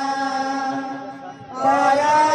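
A held, chanted note of Odia kirtan singing over a steady drone, fading away about a second and a half in before a voice comes back in.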